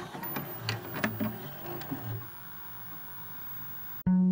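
Lo-fi glitch noise: scattered clicks and crackles with a few soft low thumps, thinning after about two seconds into a faint steady hiss and hum.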